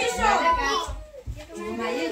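Children's voices chattering and calling out over one another, with adults talking among them and a short lull in the middle.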